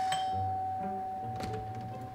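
Doorbell chime ringing out, one clear tone fading slowly, over soft background music.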